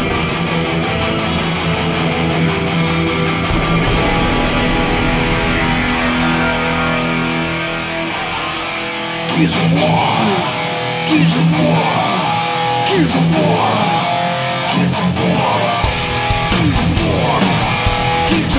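Thrash metal band playing live, distorted electric guitars holding sustained chords. About nine seconds in, drums and cymbals come in under sliding guitar lines. A heavy low end joins near the end.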